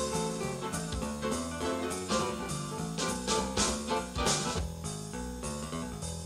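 Electronic jazz groove from a BOSS DR-5 drum machine's preset pattern, its MIDI parts played with swapped-in sounds: a drum kit with cymbal hits over a bass line and sustained chords.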